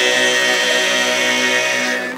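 Church choir singing unaccompanied, holding one long chord that cuts off at the end of the phrase.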